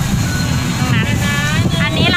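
Steady low road rumble of a moving car on a wet highway, with a singing voice from background music held over it in long notes about a second in and again near the end.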